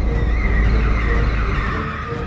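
Car tires squealing as the car pulls away hard, a screech that slides slightly down in pitch, over the low rumble of the engine.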